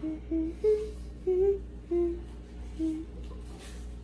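A young girl humming a few short notes of a tune, about six brief notes over the first three seconds, then quiet.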